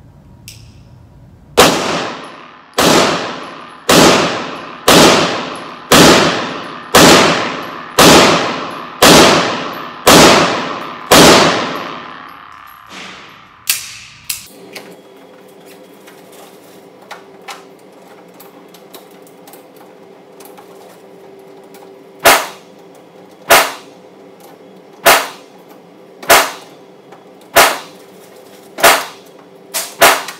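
Beretta M9 9 mm pistol fired ten times at about one shot a second, each shot ringing on in the range's hard walls. After a pause with a few small clicks, another run of shots about a second apart starts near the end, sharper and shorter.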